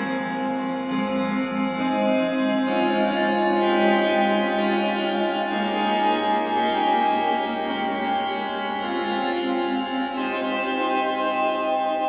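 Background music: slow organ chords of long held notes, changing every few seconds.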